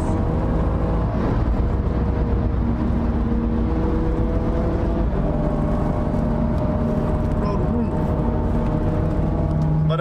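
Steady engine and road drone inside a BMW M2's cabin while it cruises at highway speed, with a low rumble and a few held engine tones that shift slightly in pitch.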